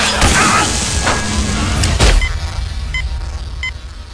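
Action-film sound track: a deep low music bed with a swishing sweep, and a heavy impact hit about two seconds in. After the hit it quietens, with three short high beeps.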